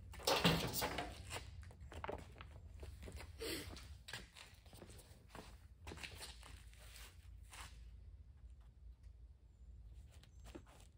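Quiet handling noises: light knocks, clicks and rustles as a random-orbit polisher and its cord are moved about on a metal cart and a foam polishing pad is fitted to its backing plate, over a low steady hum. The clicks thin out after about eight seconds.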